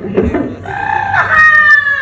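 A rooster-like crow: a pitched call starts about half a second in, jumps up in pitch, then is drawn out in a long, slowly falling tail.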